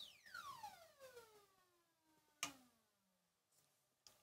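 Faint synthesizer tone from a Moog Matriarch whose pitch is swept by an ADSR envelope, gliding steadily down from very high to low over about three seconds, with delay repeats trailing behind it. A single click about two and a half seconds in.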